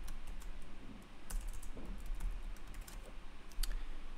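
Typing on a computer keyboard: a scattering of irregular key clicks.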